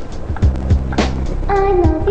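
Instrumental intro of a karaoke backing track: a steady beat of sharp percussion hits, with a bass line joining about half a second in and a stepping melody line entering about a second and a half in.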